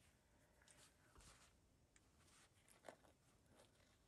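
Near silence, with a few faint rustles and one soft tap about three seconds in as hands handle a fabric journal cover.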